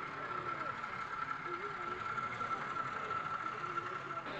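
Steady high-pitched whine from the electric motor of a 00 gauge model diesel shunter running along the track, with indistinct crowd chatter behind it. The whine cuts off suddenly at the end.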